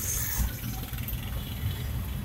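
Low, steady rumble of a car's engine and tyres heard from inside the cabin as it drives slowly.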